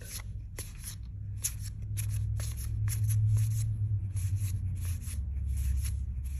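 Magic: The Gathering trading cards slid one at a time off the front of a stack and onto the back, a crisp card-on-card swipe about three times a second. A low steady hum runs underneath.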